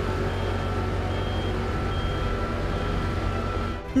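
Diesel engines of road-paving machinery, a tandem road roller and asphalt paver, running with a steady low rumble. Faint short high beeps repeat about once a second over it.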